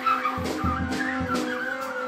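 Free-improvised jazz from a quartet of trumpet, double bass, piano and drums. A high, wavering line sounds over held lower tones, with low double bass notes in the first half and a few light percussive strokes.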